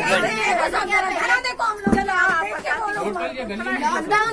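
Several people talking at once in overlapping conversation, with a brief thump about halfway through.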